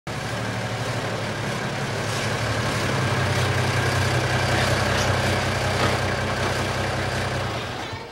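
An old truck's engine running steadily at low speed as the truck creeps forward, a low, even hum that stops shortly before the end.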